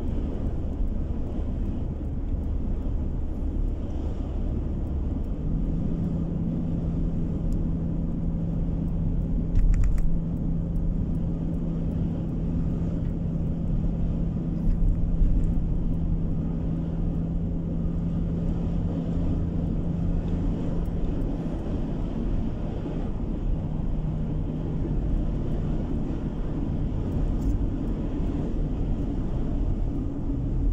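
Car cabin noise while driving steadily on an asphalt road: low tyre and road rumble with a steady engine hum that holds for long stretches. A couple of brief knocks stand out, one about ten seconds in and one around fifteen seconds.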